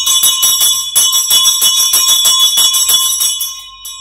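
A school bell ringing continuously with fast, even strokes, about eight a second, and a bright ringing tone, sounding the call to start class. It stops shortly before the end.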